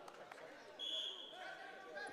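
A referee's whistle gives one short, steady, high blast about a second in, over faint voices in the hall.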